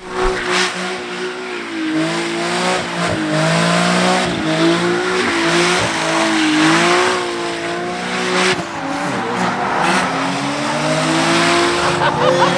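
Nissan 370Z's V6 held at high revs while its rear tyres squeal through a smoky burnout and donuts; the engine note wavers up and down as the revs rise and fall.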